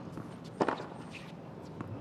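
A tennis ball struck once by a racket, a sharp crack a little over half a second in, over quiet court ambience with a few faint taps and scuffs of footwork on the hard court.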